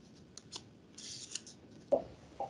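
Faint handling noise at a video-call microphone: a few small clicks, a brief rustle, then a short thump near the end.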